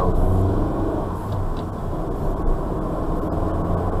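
A car's engine and tyre rumble heard from inside the cabin as the car gathers speed out of a right turn.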